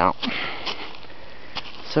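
A person breathing and sniffing close to the microphone, with a few short sniffs over a steady hiss of breath.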